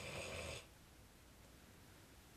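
A man snoring in his sleep: one snore that ends about half a second in.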